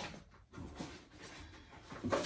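Faint handling noises: a short click at the start, then quiet rustling and light contact sounds of cigar-box packaging being moved about.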